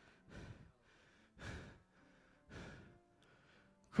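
A man breathing heavily into a microphone between lines of preaching: three deep breaths about a second apart. Faint held instrument notes sound underneath.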